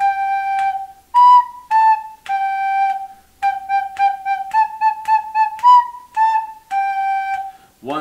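A recorder playing a short melody at a brisk pace on the notes B, A and G: B-A-G, B-A-G, then four quick Gs, four quick As, and B-A-G ending on a longer G.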